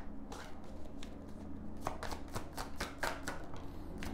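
A deck of Gilded Tarot Royale cards being shuffled by hand: a run of quick card slaps and clicks that comes faster and thicker in the second half.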